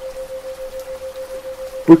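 A steady 528 Hz tone pulsing evenly about seven times a second, a 7 Hz isochronic tone, over a soft background of rain. A voice starts speaking right at the end.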